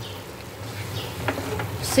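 Wooden spatula stirring and scraping thick potato halwa, cooking in ghee in a non-stick pan, with faint sizzling and a short scrape about a second in.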